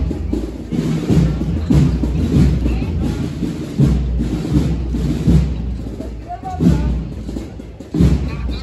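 Procession band drums beating a slow march, a heavy bass-drum stroke about once a second, over the talk of a crowd.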